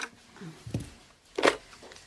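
A telephone being answered in a radio-drama scene: faint handling sounds, then a single sharp clack of the handset about one and a half seconds in.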